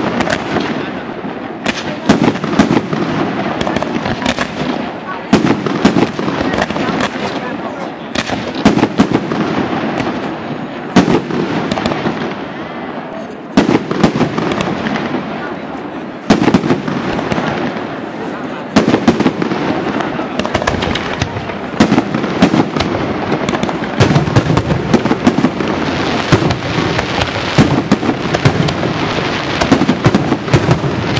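Fireworks display: aerial shells bursting one after another, a dense run of sharp bangs that swells heavier about every two to three seconds.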